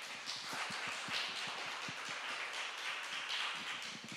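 Audience applauding: a steady patter of many hands clapping, which dies away at the end.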